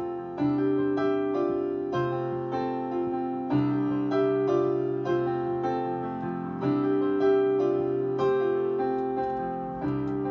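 Kawai CN37 digital piano playing its bright stage/electric piano voice: slow chords struck about once or twice a second, each ringing on and fading before the next.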